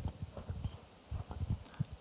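Handling noise on a live handheld microphone as it is passed between hands: a series of soft, irregular low thumps and bumps.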